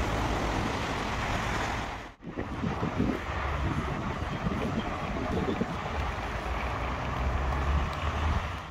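Wind buffeting the microphone outdoors: a steady rushing noise with low rumbling gusts, dropping out for a moment about two seconds in.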